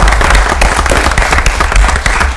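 Applause from a small group of people, many quick hand claps running together at a steady, loud level, with some of the clapping close to the table microphones.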